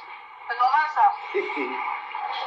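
Speech: a person talking briefly, the voice thin with no low end.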